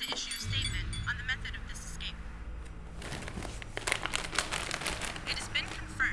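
A low steady hum sets in about half a second in. Through the second half comes a run of rustling and crackling as a person gets up off a leather couch.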